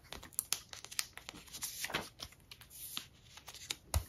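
Clear plastic binder sleeve rustling and crinkling as a photocard is slid into its pocket, with many small irregular clicks and a sharper tap near the end.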